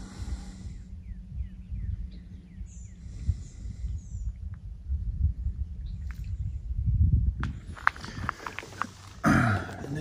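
Outdoor wind rumbling and buffeting on the microphone, with a steady low hum underneath and a few faint bird chirps. Near the end come stronger rustling and knocks, as the camera is moved down toward the rocks.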